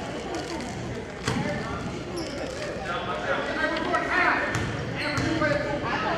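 Basketball bouncing on a hardwood gym floor, a few sharp thuds, with voices from players and spectators in the gym.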